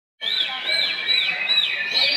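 Many caged songbirds singing at once as contest birds, a dense chorus. One whistled note that rises and falls repeats about five times, over a steady high tone.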